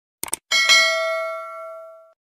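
Subscribe-animation sound effects: a quick double mouse click, then a notification-bell ding struck twice in quick succession that rings on and fades away over about a second and a half.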